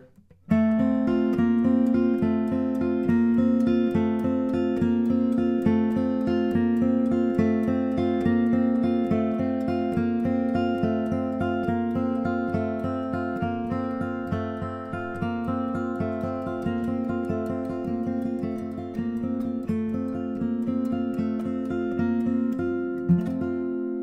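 A John Arnold-built D-18-style dreadnought acoustic guitar, with a spruce top and mahogany back and sides, played with a steady run of quick picked and strummed notes. The picking spot moves along the strings between the saddle and the fretboard to show the tone colours at each spot, with no ugly spots anywhere. The playing starts about half a second in and stops about a second before the end.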